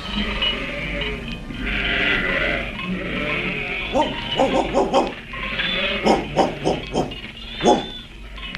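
Flock of sheep bleating, a radio-drama sound effect; the short, wavering bleats come thick and overlapping from about halfway through.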